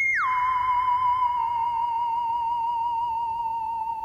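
An eerie theremin-style tone, used as a spooky sound effect. It drops sharply in pitch at the start, then holds one wavering note that slowly sinks lower.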